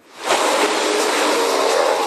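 A loud rush of surging, churning water that swells up within the first half second and then holds steady, as of a huge sea monster erupting from the sea, with a few low steady tones underneath.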